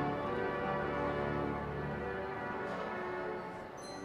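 Wanamaker pipe organ playing held chords that shift partway through and thin out, with a slight drop in level near the end.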